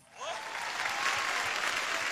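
Audience applauding, the clapping swelling up within the first half-second and then holding steady.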